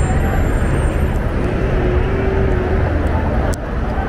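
Street ambience of a downtown road: a steady low rumble of traffic, with one sharp click about three and a half seconds in.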